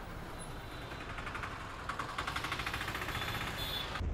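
Slow city traffic heard from a motorcycle beside a truck. A vehicle engine's rapid, even clatter comes in about a second in and grows louder about two seconds in.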